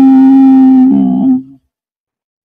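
A man's voice holds one long, steady hum at a constant pitch, a drawn-out hesitation, for about a second and a half, then stops abruptly into silence.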